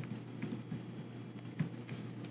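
Typing on a computer keyboard: about five scattered keystrokes over a steady low hum.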